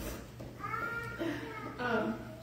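A woman speaking at a lectern microphone, her voice rising to a high, wavering pitch about a second in.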